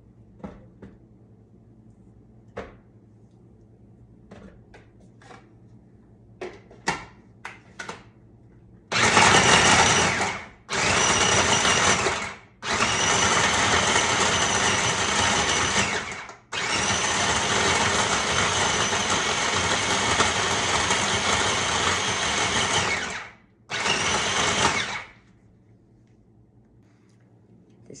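A few light knocks and clicks as the bowl is loaded, then a food processor's motor and blade run in five bursts of a few seconds each, the longest about seven seconds, grinding almond paste into moist crumbs.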